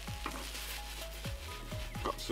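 Onions and mushrooms sizzling in a frying pan on a portable gas stove as the pan is shaken, under soft background music with short melodic notes and a light beat.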